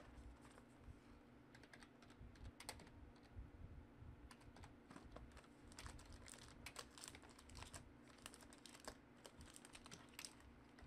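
Faint, irregular light clicks and taps of hands handling trading cards and a cardboard card box, with one sharper click at the very start.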